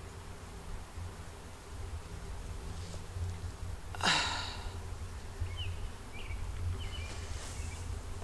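Outdoor ambience with a steady low buzz, like a flying insect, over a low wind rumble on the microphone. A short rush of noise comes about four seconds in, and a few faint high chirps follow near the end.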